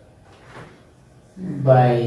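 Quiet room, then near the end a man's voice begins one drawn-out, rising syllable.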